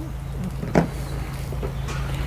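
A steady low hum with a light knock about three-quarters of a second in, as the shop vac's plastic motor head with its cartridge filter is handled.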